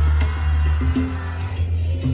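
Live salsa band playing an instrumental passage between sung lines: a strong bass line under drum and percussion hits, with no voice.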